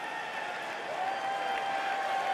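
Audience in an arena applauding, an even wash of clapping and crowd noise, with a faint held tone coming in about halfway.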